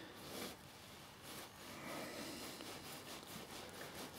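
Faint rubbing and scraping as a small nylon bolt is screwed by hand into a freshly tapped M3 thread in acrylic sheet, coming in a few quiet, uneven strokes.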